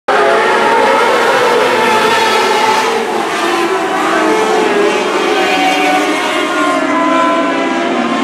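A field of modlite race cars running together around a dirt oval: many engines at once, their overlapping notes rising and falling as the cars accelerate and lift through the turns.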